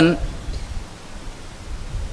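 A pause in a man's lecture: the end of a spoken word right at the start, then a steady hiss with a low rumble from the recording's background noise.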